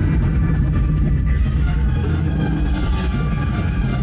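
A live band playing loud amplified music through a venue PA, with heavy bass and drums.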